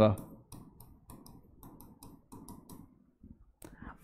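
Pen tapping and clicking on a digital writing board's screen while writing an equation: faint, irregular clicks.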